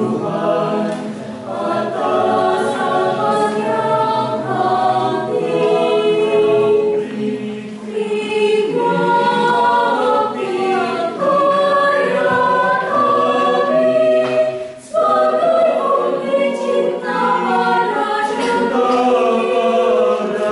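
Small mixed choir singing a hymn a cappella in several voice parts, with one short pause for breath about three-quarters of the way through.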